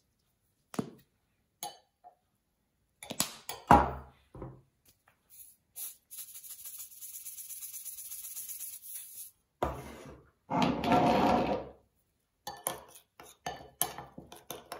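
A metal spoon clinking and scraping against a ceramic bowl while olive oil, garlic and spices are stirred, with a few sharp knocks of spice jars or the spoon on the counter. There is a steady hiss of about three seconds midway while salt is added, and quick light clinks of stirring near the end.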